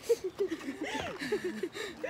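Voices of several people with quickly repeated laughing syllables. A short sharp sound comes right at the start.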